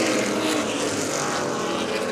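Several Pro Late Model stock car V8 engines running hard together as the pack goes through a turn, a steady engine drone.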